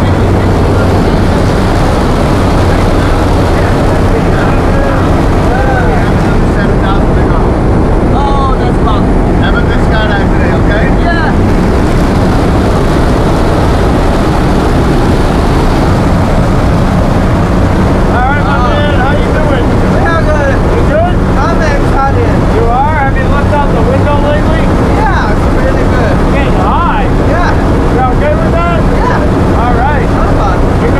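Turboprop jump plane's engine and propeller heard from inside the cabin: a loud, steady drone with a low hum. People's voices talk under the noise, more of them in the second half.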